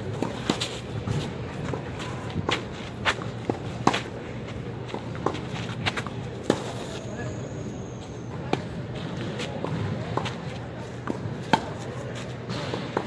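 Tennis balls struck back and forth on a clay court: sharp pops of racket strings hitting the ball every second or two, with softer bounces between, the loudest hits a little under 4 s and about 6.5 s in.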